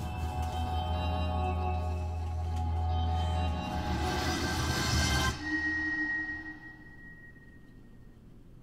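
Label intro music at the opening of a K-pop trailer: a dense sustained chord over heavy deep bass that cuts off about five seconds in, leaving a thin high tone that fades away.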